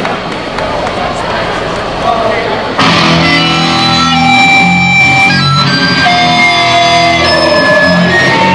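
Live band's electric guitars and bass come in suddenly and loudly about three seconds in, playing sustained, ringing chords that open the next song. Before that, only the murmur of the crowd in the hall.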